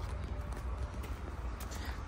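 Footsteps on asphalt with a low wind rumble on the microphone.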